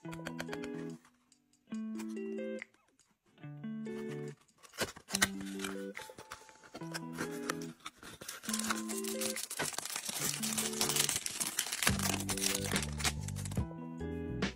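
Background music in short repeating phrases. From about five seconds in until near the end, it is joined by the crinkling and tearing of a cardboard blind box and its foil wrapper being opened by hand.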